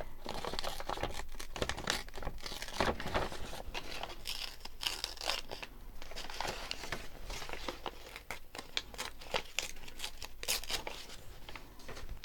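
Paper scraps and cut-outs rustling and crinkling as they are picked through and handled, in an irregular run of short crackles and light taps.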